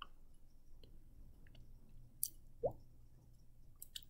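Quiet room with a steady low hum, broken by a few faint sharp clicks and one short rising squeak about two and a half seconds in.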